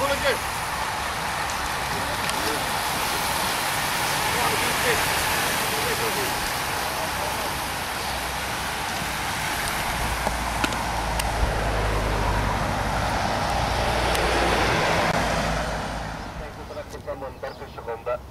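A large pack of road-racing bicycles passing close by: a steady rush of tyres and freewheels, with a low engine rumble from about ten seconds in. The rush cuts off suddenly about sixteen seconds in.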